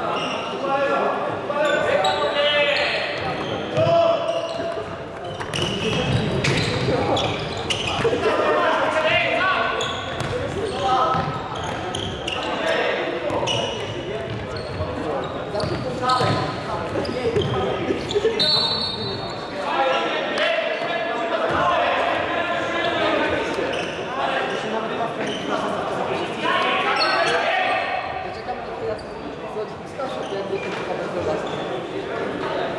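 Futsal game in a reverberant sports hall: players calling out to each other, with the thuds of the ball being kicked and bounced on the wooden floor and footsteps, and a brief high squeak a little past the middle.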